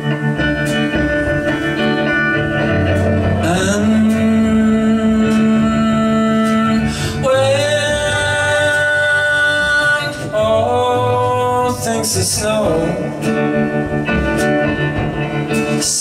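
Live song: an electric hollow-body guitar and an acoustic guitar accompany long held sung notes that glide between pitches, from a male and a female voice.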